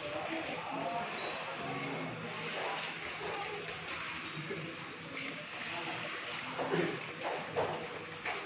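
Street ambience in a narrow lane: indistinct background voices throughout, with a few sharp knocks near the end.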